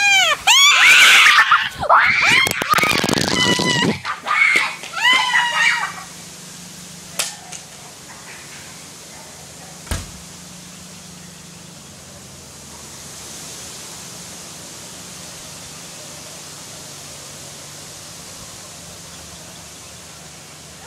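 Rapid, high-pitched screams and shrieks of fright for about the first six seconds. After that comes a steady low background noise with two faint knocks.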